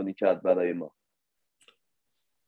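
A voice speaking for just under a second, then near silence with one faint click.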